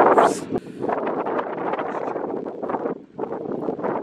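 Wind buffeting the microphone: an uneven rushing that dips briefly about three seconds in.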